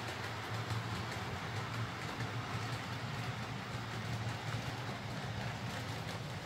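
OO gauge model diesel multiple unit running on DC track: a steady electric motor hum with the rolling noise of its wheels on the rails.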